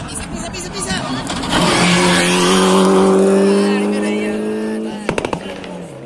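Rally car engine held at high revs at full throttle as the car comes down a gravel stage and passes close by, its note steady for about three seconds. A few sharp cracks follow near the end, then the sound falls away.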